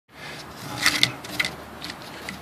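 Handling noise: a hand moves a cable beside a coffee-can speaker, giving a few short sharp clicks and rubs over a steady background hiss. The sound starts abruptly at the beginning.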